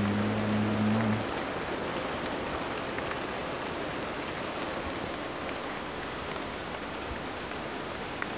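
Steady rain falling on forest foliage, an even hiss throughout.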